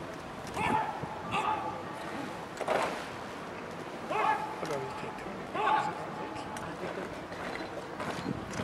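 Five short, loud calls spread over about five seconds, each a brief sharp cry, over a steady murmur of crowd chatter.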